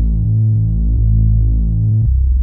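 Electronic music: a deep synthesizer bass drone, pulsing about once a second, with no drums or melody on top.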